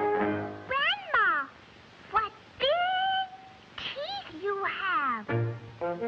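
Cartoon cat meowing: about five separate meows, mostly falling in pitch and one rising then held, after the music breaks off under a second in. Brass band music comes back near the end.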